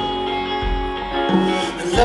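A live band playing, with guitar carrying an instrumental passage between sung lines. It is heard from far back in a large audience.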